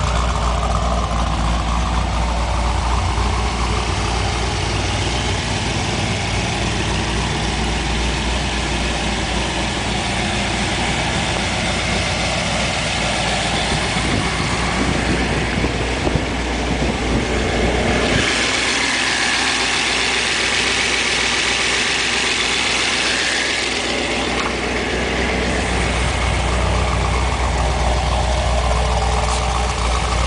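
Chevy V8 in a Datsun 240Z idling steadily, a deep low rumble from its twin exhaust tips. For several seconds past the middle the low rumble drops away and a higher rushing sound takes over, then the rumble returns.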